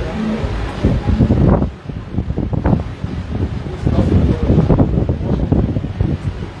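Handling noise: rustling and rubbing right against the microphone in two spells, about a second in and again from about four seconds, as hands work a head wrap and beaded crown onto the head of the person filming.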